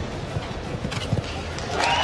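Hoofbeats of a show-jumping horse cantering on turf, a few irregular low thuds over a crowd murmur, with the crowd's noise swelling into a cheer near the end.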